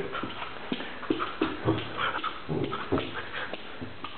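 A dog whimpering in short, irregular sounds.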